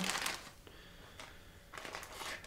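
A plastic bag rustles briefly as it is set down on a wooden table, then faint small handling sounds from a cardboard box.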